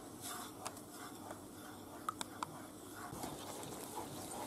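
Wooden spoon stirring a thick flour-and-stock sauce in a non-stick frying pan as it is brought to the boil: faint, soft stirring with a few small ticks.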